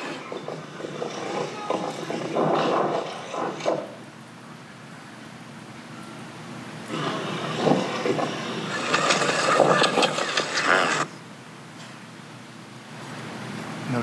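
Phone livestream audio of a night-time street during unrest, played back in a courtroom: street noise and indistinct sound of the scene in two louder stretches, the second about four seconds long, with quieter noise between.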